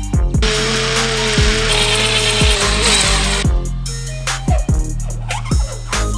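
Background music with a steady drum beat; from about half a second in, a power drill runs for about three seconds at a steady pitch and then stops.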